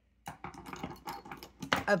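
Fountain pens clicking and tapping against one another as they are set down and nudged into a row on a wooden desk: a quick run of light clicks.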